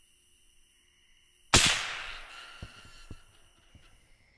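A single rifle shot about a second and a half in, its report rolling away and fading over about a second, followed by a few faint knocks. Insects trill steadily in the background.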